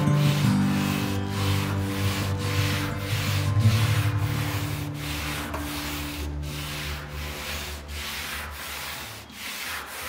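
Hand sanding of a boat's painted hull: sandpaper on a block rubbed back and forth in short strokes, about two a second.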